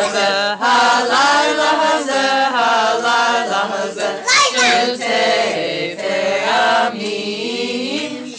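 Several voices, children's and adults' together, singing a Hebrew Passover song in unison.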